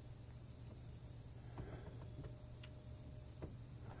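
A few faint, scattered light ticks of a 2010 Ford Ranger 2.3L engine's timing chain as a finger presses it down between the cam sprockets to check its slack, which the owner fears is enough for it to skip a link. Under them is a low steady hum.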